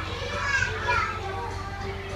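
A young child's high voice calling out briefly about half a second in, over music playing in the background.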